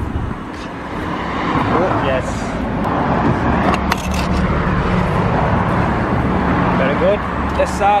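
A motor vehicle's engine running close by over road traffic noise, its drone steadiest through the middle seconds, with a few brief voice sounds near the start and end.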